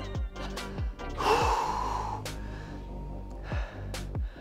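Background music with a steady beat, and about a second in a loud, heavy exhale from a man catching his breath after a hard workout set.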